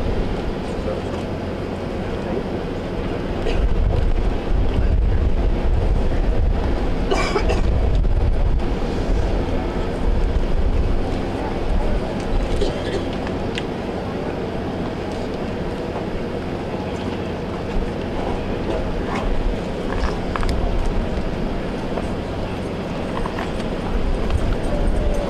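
Wind buffeting the microphone, a low rumble that swells for several seconds, over the indistinct murmur of an outdoor crowd.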